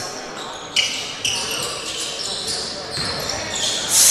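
Basketball being dribbled on a hardwood gym floor, with short high sneaker squeaks as players move. A sharp bounce comes about three-quarters of a second in.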